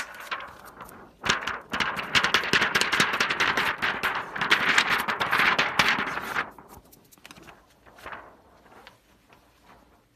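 Printed DTF transfer film being flexed and shaken in a plastic tub to spread and knock off its adhesive powder: a dense, rapid crackle and rattle from about a second in until about six and a half seconds, then only faint rustles.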